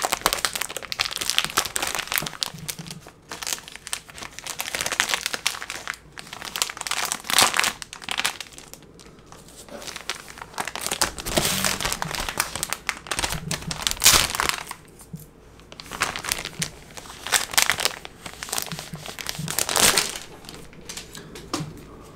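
Plastic comic book bags crinkling as comics and their cardboard backing boards are handled and slid in and out of them, in irregular bursts with short pauses.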